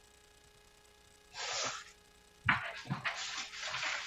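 Breath noises from a person close to a microphone: a short breathy inhale about a second in, then a sharper, longer burst of breathy noise with small mouth and rustling sounds.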